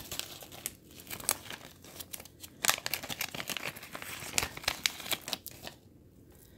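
Small plastic zip-lock bags crinkling and rustling as they are handled, a run of irregular crackles.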